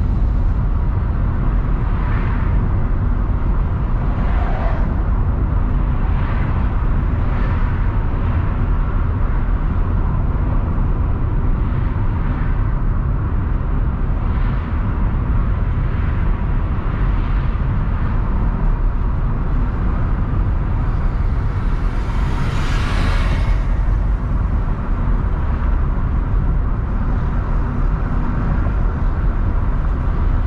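Steady road noise of a car being driven, heard from inside the cabin: a continuous low rumble of tyres and engine, with faint swells every second or two. A brief louder hiss comes about two-thirds of the way through.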